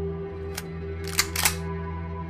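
Ambient background music with a low steady drone, over which sharp plastic clicks come from a Nerf blaster being handled: one about half a second in, then two louder ones close together a little past halfway.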